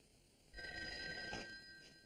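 A telephone rings once, starting about half a second in and lasting about a second and a half.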